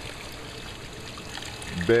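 Water from an aquaponic system's inflow falling steadily into a water-filled bed of stones, a continuous trickling pour.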